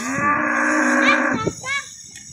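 A cow mooing: one long, loud moo lasting about a second and a half.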